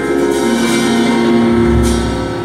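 Live band playing an instrumental passage: electric guitars holding sustained notes over a bass guitar line. A low bass note comes in about half a second in, and a short crash sounds near the end.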